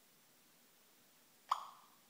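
Quiet, then about a second and a half in, a single short electronic blip from the iPhone's voice-assistant app that fades quickly: the tone marking the end of listening as the app starts processing the spoken request.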